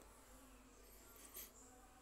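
Near silence: faint hiss with a faint, thin high-pitched whine, and one soft tick about one and a half seconds in.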